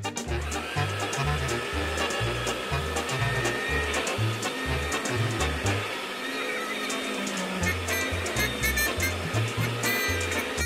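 Toy handheld vacuum cleaner whirring steadily as it runs over a shaggy rug, a motor hum with a thin high whine in it. Background music with a steady bass beat plays under it.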